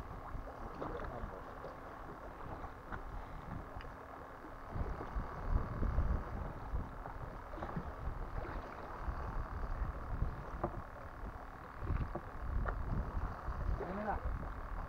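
Sea water sloshing against the side of a small fishing boat, with low rumbling gusts that are strongest about five to six seconds in and again near the end.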